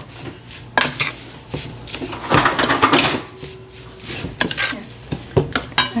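A stainless-steel spoon scraping and knocking against the side of a metal pot while stirring a thick mass of grated mango and masala. The strokes are irregular, with a longer, denser stretch of scraping about two to three seconds in and sharp clicks near the end.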